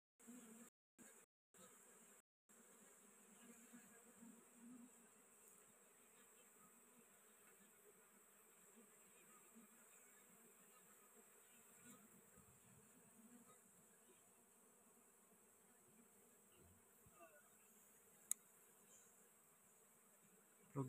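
Faint, steady buzzing of honey bees crowding over a small wild comb, swelling a little in places as bees fly close. A single sharp click sounds near the end.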